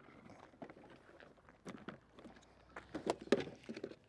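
Footsteps on gravel, irregular and fairly quiet, with a few sharp knocks that come more often and louder in the second half.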